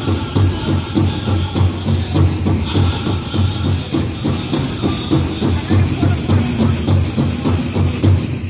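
Powwow drum group singing a jingle-dress contest song over a steady beat on the big drum, with the metal cones of the dancers' jingle dresses rattling in time.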